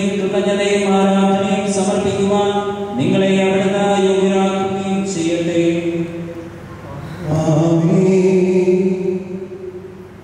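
A priest chanting a liturgical blessing in long, held sung notes, in phrases with short breaks: a new phrase about three seconds in and another about seven seconds in, which fades shortly before the end.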